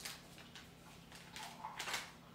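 Quiet room with faint rustling and a few light clicks from a small cardboard snack box being handled.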